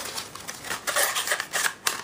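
Paper disc sleeve and printed software case being handled and slid together, a rustling, scraping sound with several sharp clicks.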